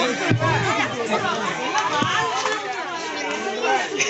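A group of children's and young women's voices chattering and calling out over one another, no single voice clear.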